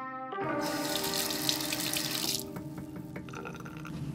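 Bathroom sink tap running water into the basin for about two seconds, then shut off.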